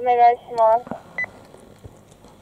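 A person shouting a few short, drawn-out calls in quick succession, then a single short high beep a little after a second in.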